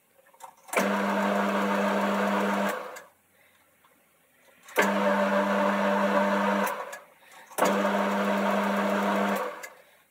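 A Boxford lathe runs in three short spells of about two seconds each with a steady hum, stopping between them. These are successive screw-cutting passes of a boring bar through a phosphor bronze nut, with the lathe run back and forth without disengaging the gears.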